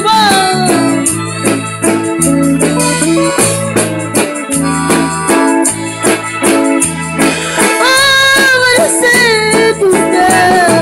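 Live band playing an instrumental passage of a Spanish-language Christian song: an electric bass holding a line of sustained notes under an electronic keyboard with an organ sound, with drums keeping a steady beat.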